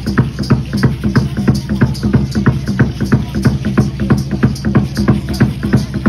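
A drum beaten in a fast, even dance beat, about four to five strokes a second, for the dancers.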